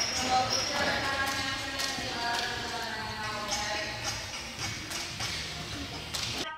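Jump ropes turning on balance beams: light rope slaps and foot landings repeating about once a second, under voices in the gym.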